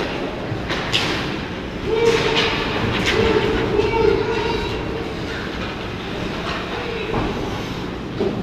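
Ice hockey play close to the goal in an echoing rink: skates scraping the ice and sticks and puck clacking in a few sharp knocks, over a steady rumble, with a hum that comes and goes and players' voices.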